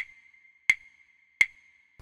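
Sampled wood block struck three times, evenly about 0.7 s apart, each sharp knock leaving a high ringing tone that carries on under added reverb.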